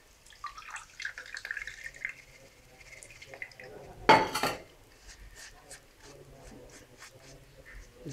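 Water poured from a steel vessel into a plastic tea strainer to rinse the grains left in it, with faint drips and small clinks. There is a brief louder noise about four seconds in.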